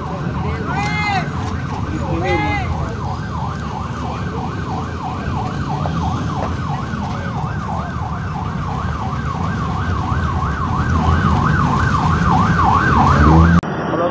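Emergency vehicle siren in a fast yelp, its pitch sweeping up and down about three times a second, over a low rumble of vehicle engines that grows louder. The siren cuts off suddenly near the end.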